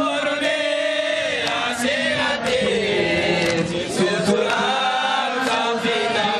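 A crowd of men chanting a Shia mourning lament for Ashura in unison, a slow melodic line that rises and falls, with a few sharp slaps of hands beating on chests (matam) at uneven intervals.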